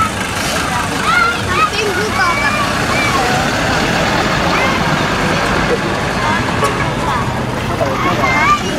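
Large truck's diesel engine running steadily as it drives slowly past, with people's voices over it, mostly in the first couple of seconds.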